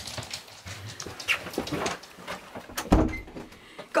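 Short dog sounds from a small dog amid scattered knocks, steps and handling noises in a hallway, with one heavy thump about three seconds in.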